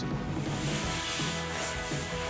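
Microfiber cloth rubbing over a car's dashboard and shift console, a steady scrubbing noise, with soft background music underneath.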